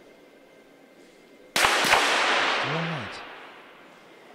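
.22 sport pistols firing: two sharp shots about a third of a second apart, one from each shooter, followed by a loud noisy tail that fades over about a second and a half.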